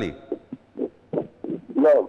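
A caller's voice over a telephone line, muffled and broken into short, indistinct fragments with no words that can be made out: the line is "not clear", which the presenter puts down to something covering the caller's microphone or a connection problem.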